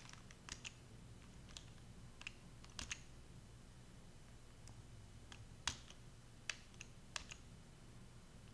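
Computer keys being pressed to step from one chart to the next: faint, scattered single clicks, about a dozen, some in quick pairs, with the loudest a little before six seconds in, over a faint low hum.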